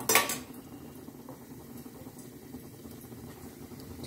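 A brief clatter of steel utensils right at the start, then the soft, steady bubbling of hot oil deep-frying in a steel kadhai.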